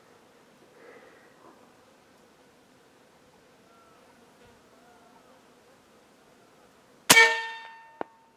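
One shot from an American Air Arms .357 Slayer PCP air rifle about seven seconds in. It is a sudden loud crack with a brief metallic ring that fades within a second. A faint smack of the slug hitting a ground squirrel about 145 yards out follows near the end.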